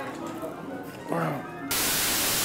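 A short spoken call about a second in, over low café background, then loud TV-style static hiss cuts in suddenly near the end and holds steady.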